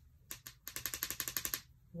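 Pen scratching across planner paper in a quick run of short strokes, about a dozen a second, for about a second.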